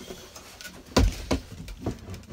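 A sharp knock about a second in, followed by a few lighter knocks and thuds.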